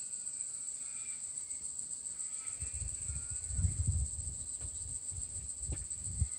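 Steady high-pitched insect chorus of crickets or cicadas, with a low rumbling bump of handling noise near the middle.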